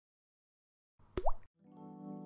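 A short pop with a quick upward-sliding tone about a second in, then a soft held music chord swelling in near the end: the sound effect and music of an animated logo intro.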